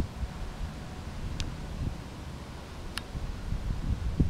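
Wind rumbling on the camcorder microphone, with two faint short clicks about a second and a half apart.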